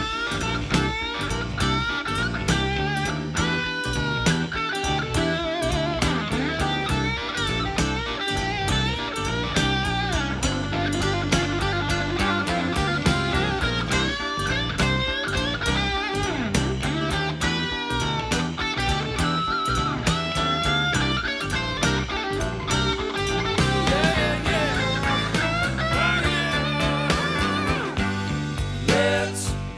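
Southern blues-rock band playing an instrumental passage with no vocals: a lead electric guitar plays wavering, bending lines over bass and a steady drum beat.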